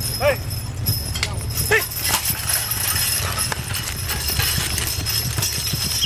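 Team of two draft mules hauling a weighted pulling sled across loose dirt, their hooves plodding, while the driver shouts 'hey' at them twice in the first two seconds.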